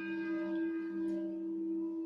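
Organ holding a sustained chord, the instrumental introduction to a communion hymn; the chord breaks off briefly near the end as the next one begins.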